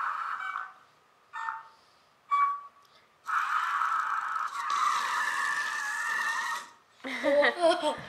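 Small Novie toy robot driving across a wooden floor in its car trick, its wheel motors whirring in two short bursts and then a steadier run of about three seconds. A child laughs near the end.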